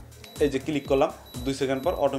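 A man talking, with the Canon EOS 80D's self-timer beeping thinly and high behind his voice as it counts down to the shot, over background music.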